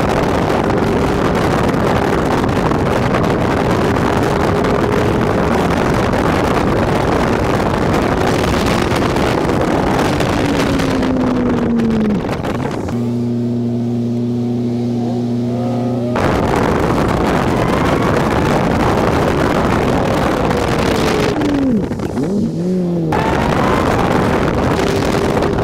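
Honda Civic Si driving at speed, with heavy wind and road rush on the GoPro microphone and an engine note that falls as the car slows. About midway the rush drops away and the engine holds a steady tone for about three seconds before the car pulls away. Another falling engine note and a brief drop in the noise come near the end.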